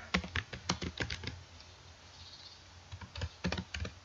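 Typing on a computer keyboard: a quick run of keystrokes, a pause of about a second and a half, then another short run near the end.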